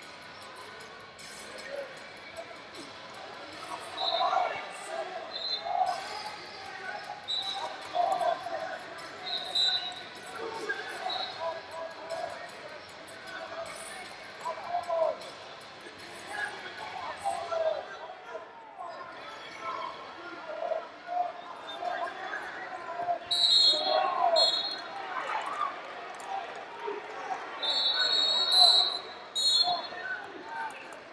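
Voices of coaches and spectators calling out, echoing in a large arena during a wrestling bout, with short high squeaks now and then, loudest near the end.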